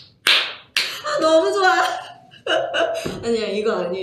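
Two sharp hand claps in the first second, then a woman's voice laughing and talking.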